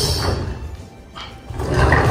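Low rumbling noise from a plastic toy garbage truck. It fades about a second in and returns near the end.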